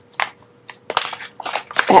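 Plastic packaging handled by hand: a string of short, irregular crackles and clicks.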